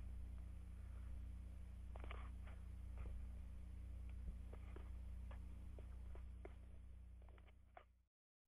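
Faint, steady low electrical hum with scattered light clicks and taps over it.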